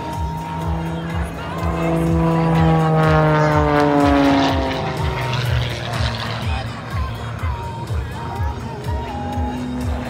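Aerobatic stunt plane's engine passing overhead, loudest about two to five seconds in, its note falling in pitch as it goes by. Music with a steady beat plays over the loudspeakers throughout.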